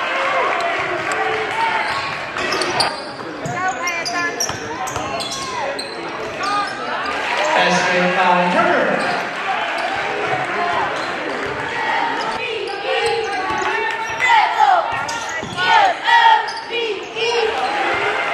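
Live sound of a high school basketball game in a gym: a basketball dribbling and sneakers squeaking on the court over voices from players and the crowd, all ringing in the large hall.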